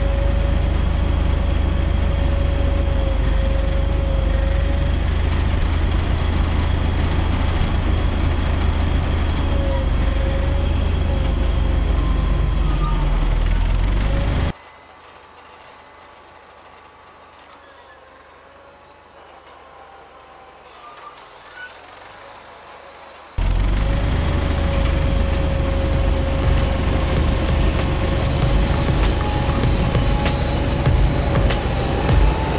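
1953 Farmall Cub's four-cylinder engine running close by with a deep rumble. About halfway through the sound drops suddenly to a much fainter, distant level for several seconds, then returns just as suddenly to the close, loud rumble near the end.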